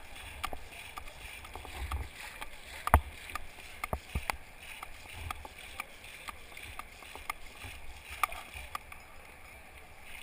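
Double-bladed paddles dipping and splashing in moving river water beside an inflatable kayak, over a steady wash of water. Several sharp knocks come at irregular intervals, the loudest about three seconds in and two more close together around four seconds.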